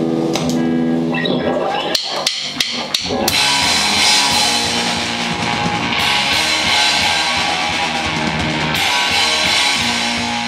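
Live rock band playing an electric bass, guitar and drum kit. Held bass and guitar notes open the song, a few sharp drum hits come about two to three seconds in, and then the full band plays on with steady cymbals.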